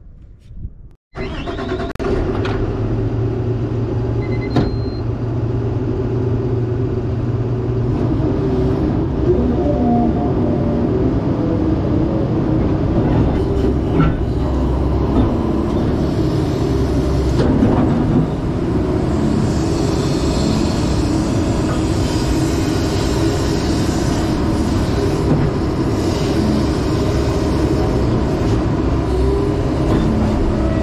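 Sany excavator's diesel engine running steadily under digging load, heard from inside the cab, starting about a second in. A few separate knocks come through as the bucket works the rock.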